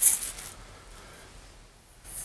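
A brief rustle of packaging as chair parts are pulled out, in the first half second, then only faint handling noise.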